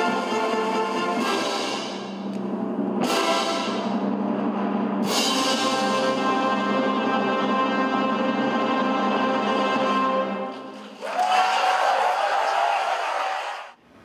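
Symphony orchestra playing the closing chords of a piece: loud full chords struck about two seconds apart, the last held for about five seconds and then released. Applause follows from about eleven seconds in until just before the end.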